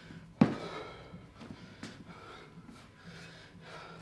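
A man breathing hard during a kettlebell clean and lunge: one sharp breath out about half a second in, then fainter, shorter breaths.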